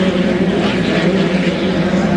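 Several 2.5-litre-class racing hydroplanes running flat out in a pack. Their engines make a loud, steady, high-pitched drone that holds one pitch.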